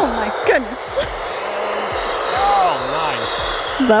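Electric ducted fan of an E-Flite F-16 Thunderbirds 80 mm RC jet running at high power in reverse thrust on the landing rollout, braking the jet. It makes a steady, loud rushing whine.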